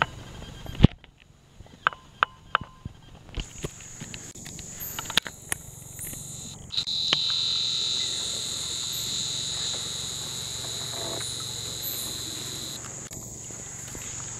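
Forest insects drone steadily at a high pitch, joined about seven seconds in by a louder, lower insect drone that cuts off near the end. Sharp clicks and knocks come through the first half.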